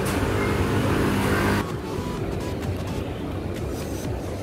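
City street traffic noise, with a vehicle engine running loudly for the first second and a half. It then cuts off abruptly to a quieter street background.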